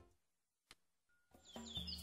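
Near silence, then about one and a half seconds in a faint forest-ambience sound effect fades in, with a few high bird chirps.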